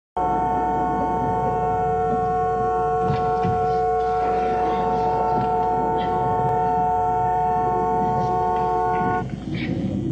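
A car horn held down, one unbroken multi-tone blare at steady loudness, cutting off suddenly about nine seconds in.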